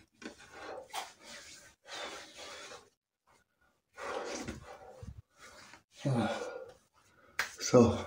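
A man's hard breaths and sighs, three breathy exhales in the first few seconds followed by short voiced sounds, as he pats aftershave onto his freshly shaved face.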